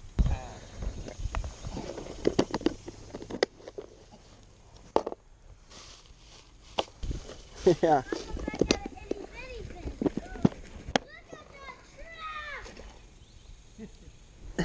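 Handling of a plastic tackle box and fishing gear: rustling and several sharp plastic clicks, one as the box's latch is worked, with voices talking around it.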